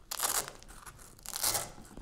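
Hook-and-loop (Velcro) fabric sheets being handled, with two short tearing rustles: one at the start and one about a second and a half in.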